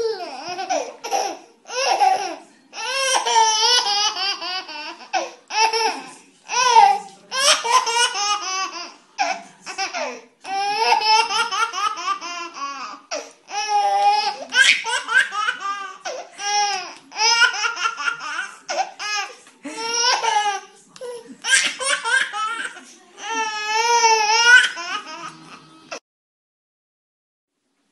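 A baby laughing heartily in repeated high-pitched bouts, each a few seconds long, with short pauses between them.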